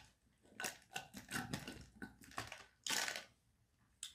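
Slurping the last of a taro bubble tea through a wide straw from a nearly empty plastic cup: a run of short crackling sucks, with one louder slurp about three seconds in.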